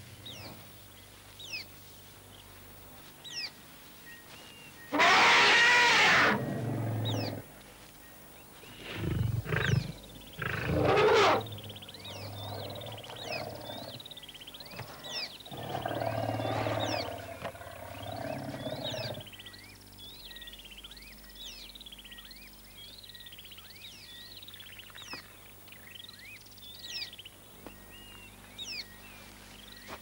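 Lions roaring and snarling in several loud, rough bursts: the loudest about five seconds in, more around ten seconds and again about sixteen seconds in. Small birds chirp throughout.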